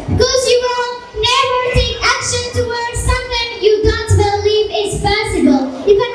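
A young girl's voice, amplified, reciting lines continuously in a delivery close to chanting.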